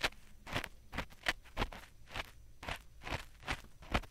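Ear pick scratching and scraping inside the silicone ears of a 3Dio binaural microphone for ASMR ear cleaning, in short, uneven strokes of about three a second.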